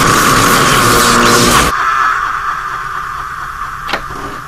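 A loud surge of electrical energy with a steady high hum, the sound effect of energy beams, which cuts off sharply after about a second and a half to a quieter hiss. A single sharp knock comes just before the end.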